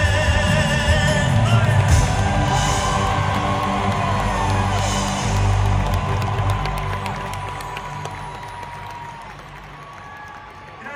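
A live band finishing a song in a large arena, heard from among the crowd: the last sung note ends about a second in and the music fades away, while the crowd cheers and whoops.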